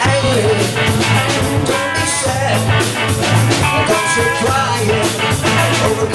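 Live rock band playing at full volume: a drum kit keeping a steady beat under electric guitar and keyboard.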